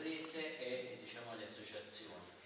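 A man speaking Italian in a room: speech only, with no other sound standing out.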